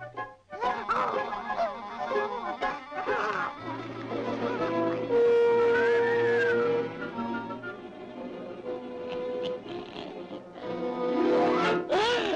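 1930s cartoon orchestral score. It has swooping, sliding figures in the first few seconds, a long held note through the middle, and a loud swell near the end.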